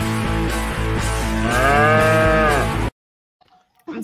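A cow moos once, a long arching call, over guitar-driven music. About three seconds in, both cut off suddenly.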